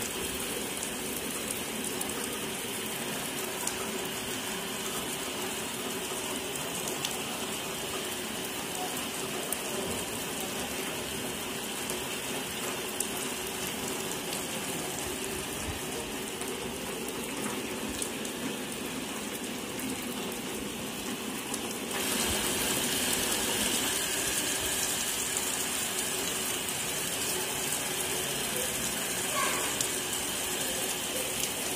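Heavy monsoon rain falling steadily and splashing on a wet concrete surface. About two-thirds of the way through it steps up, louder and brighter.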